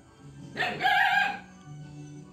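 A rooster crows once, starting about half a second in and lasting about a second, over steady background music.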